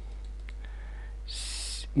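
A pause in a man's narration with a steady low hum under the recording, a faint click about half a second in, and a short high hiss just before the speech resumes.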